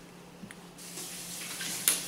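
Faint running water, like a tap left on in another room, starting about a third of the way in, over a low steady hum. A single sharp click near the end.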